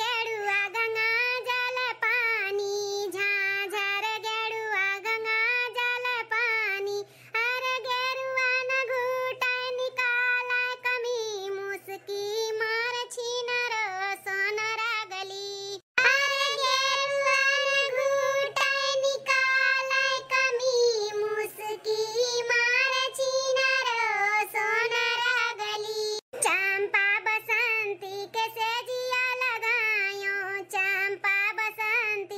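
A single high-pitched cartoon voice singing a song, holding long wavering notes, with short breaks about a quarter, half and most of the way through.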